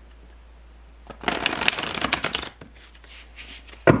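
A deck of tarot cards being shuffled by hand: a dense run of rapid card flicks lasting about a second and a half, starting about a second in, then a few softer clicks and one sharp tap near the end.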